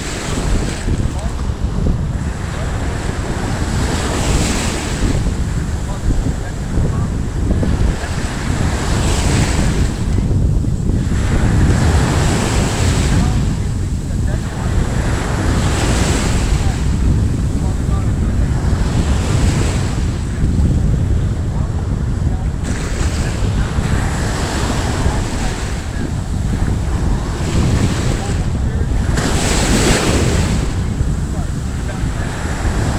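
Wind buffeting the microphone over surf on a shore, with a wave washing in every four or five seconds.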